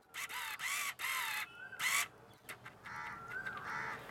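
A crow cawing: a quick run of about four caws in the first two seconds, then fainter calling near the end.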